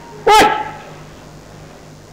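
A man's voice shouts one short, loud "Όχι!" ("No!"), followed by a pause that holds only a steady low hum and hiss.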